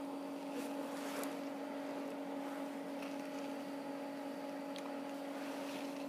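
A steady hum held at one unchanging pitch, with faint hiss and a few faint ticks.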